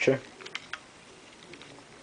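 A few faint plastic clicks as toy Beyblade launchers and a ripcord are handled and moved about, over quiet room tone.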